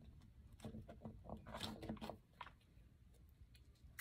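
Near silence with faint small clicks and crackles from about half a second to two and a half seconds in, as food is picked out of a charcuterie box by hand.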